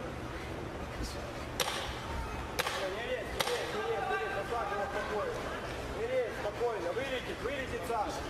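Sharp smacks of boxing-glove punches landing, four of them in the first half, over ringside voices calling out that grow more noticeable in the second half.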